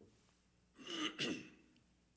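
A man clearing his throat: two short rasps close together, about a second in.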